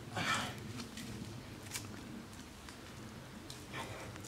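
Faint scuffs of a barefoot climber's hands, feet and back working against tree bark while chimney-climbing between two trunks: one short scuff just after the start and another near the end, with a few light clicks between.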